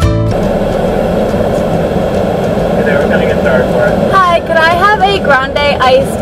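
Steady noise of a car idling, heard from inside the cabin, after background music cuts off at the start; voices come in over it from about three seconds in.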